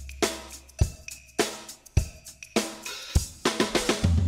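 Drum-kit backing beat of a children's chant track: kick, snare and hi-hat hits about every 0.6 seconds, with a quick drum fill near the end leading into a cymbal crash.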